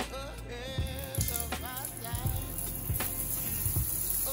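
Background music with a melody, and from about a second in a shower running with a steady high hiss of falling water.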